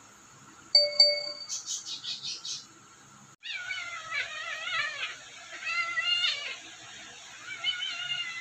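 A sudden bright ding about a second in, followed by a quick run of high chiming pulses. After a short break, a kitten mews in three bouts of high, wavering calls.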